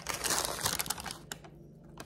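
Brown paper bag crinkling and rustling as it is handled and opened, loudest in the first second and quieter after.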